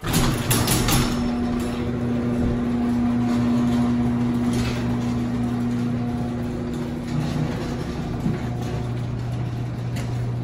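Electric garage door opener running as the overhead door rises: a steady motor hum that starts abruptly, with some clatter in the first second.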